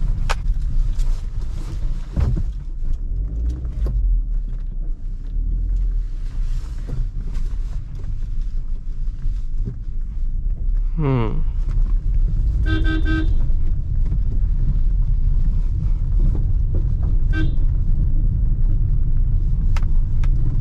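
Maruti Suzuki Ciaz sedan heard from inside the cabin as a steady low engine and road rumble while driving through a narrow lane. A car horn gives a toot of about a second past the middle, and a shorter one a few seconds later.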